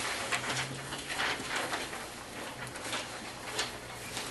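Quiet meeting-room sound: faint rustling and small clicks, typical of test sheets being handled and passed around a table. A steady low hum sounds briefly, starting shortly after the beginning and lasting about a second.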